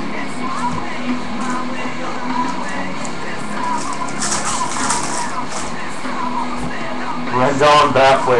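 Trading-card pack wrapper crinkling as a pack is handled and torn open about four seconds in, over steady background music. A man starts talking near the end.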